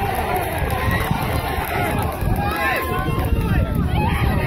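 Several voices shouting and calling out at once, overlapping throughout, over a steady low rumble.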